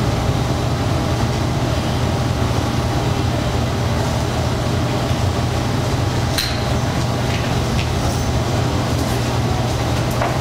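Steady low hum with a constant background noise and no speech; a faint click about six and a half seconds in.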